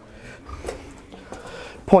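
Faint handling noise with a few soft knocks as the camera is moved about, and a man's voice beginning right at the end.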